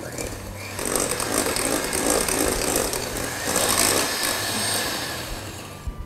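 Handheld electric mixer running, its beaters whisking a sugar, egg and oil mixture in a glass bowl. The sound eases off near the end.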